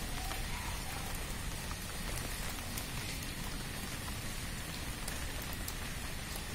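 Steady rain falling, a constant even hiss with scattered small drip ticks.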